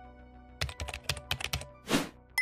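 Computer keyboard typing sound effect, a rapid run of key clicks lasting about a second, over soft background music, followed near the end by a short whoosh.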